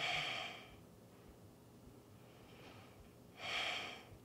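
A woman breathing audibly close to the microphone while holding a kneeling yoga stretch: two breaths, one right at the start and another about three and a half seconds in.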